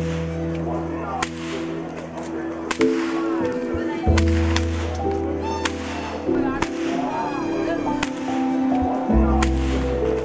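Long ceremonial whips cracked by the whip-crackers (kasakaruwo) leading a Sri Lankan perahera, a series of sharp cracks roughly once a second. The cracking announces the procession's approach and clears the way ahead of it.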